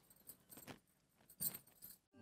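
Faint handling noise from a handheld microphone being passed and picked up: a few soft rustles and clicks.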